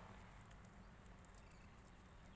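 Near silence: faint background noise with a few faint, light clicks.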